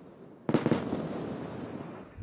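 Airstrike explosion in a city: a sudden blast about half a second in, then a long, slowly fading roll.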